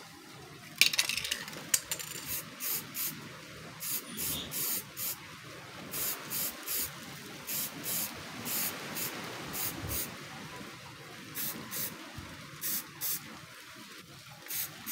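Aerosol spray-paint can spraying a clear top coat in many short hissing bursts, each under half a second, often two or three in quick succession. A loud clatter about a second in.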